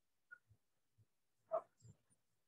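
A single short, faint animal call about one and a half seconds in, among a few soft low knocks.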